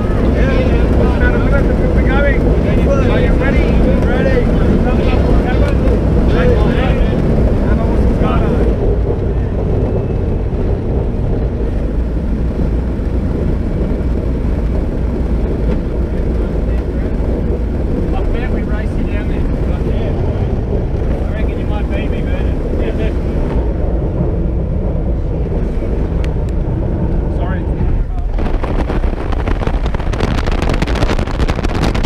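Light aircraft's engine and propeller heard from inside the cabin during the climb: a loud, steady low drone. Near the end a louder rushing noise comes in.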